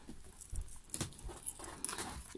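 Faint handling noise of fingers working split-ring pliers on a small metal split ring and swivel snap close to the microphone, with a few light metal clicks about half a second apart.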